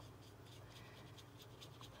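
Faint, soft scratching of a watercolour brush stroking across wet paper in a run of short, light strokes.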